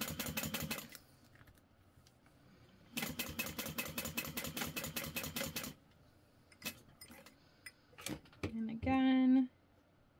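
Juki industrial sewing machine top-stitching through layered vinyl in two fast, even runs of stitches, the first stopping about a second in and the second running from about three seconds to nearly six. A few single clicks follow, then a short steady pitched hum near the end, the loudest sound here.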